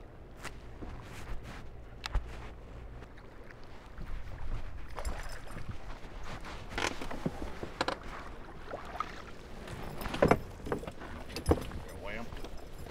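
Footsteps and scattered knocks and clicks on a bass boat's deck while a just-caught bass is handled and carried back to the console, with a couple of sharper thumps near the end.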